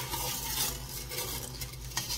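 White plastic spoon stirring sugar into hot water in a stainless steel pot, swishing and scraping lightly against the pot, to dissolve the sugar. A steady low hum runs underneath.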